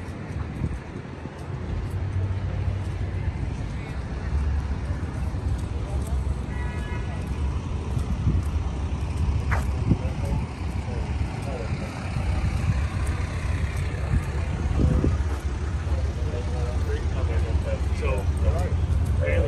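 Steady low rumble of vehicle engines and street traffic, with indistinct voices in the background. A brief high tone sounds about seven seconds in, and a single sharp click comes near ten seconds.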